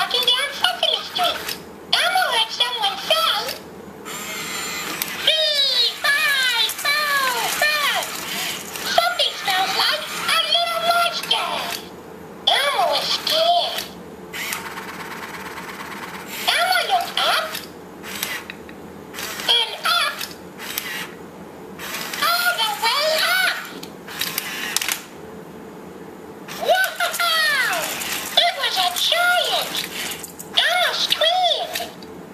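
Elmo Live toy robot talking in its high-pitched Elmo voice through its built-in speaker, in phrases with short pauses between them, and the whir of its motors as it moves its head and arms.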